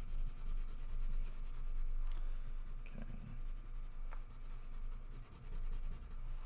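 White Prismacolor colored pencil scratching over drawing paper while light is shaded in, over a steady low hum.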